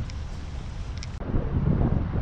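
Wind buffeting the microphone: a steady low rumble with a noisy hiss above it, dipping briefly a little over a second in.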